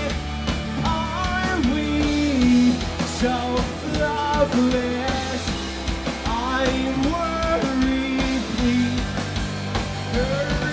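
Live rock band playing: electric guitar, bass and drum kit together, with a melodic line that slides between held notes.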